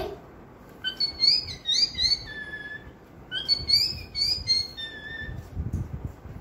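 A girl imitating a cockatiel's call with her voice: two whistled phrases of quick chirping notes that rise and fall, each ending on a longer held note.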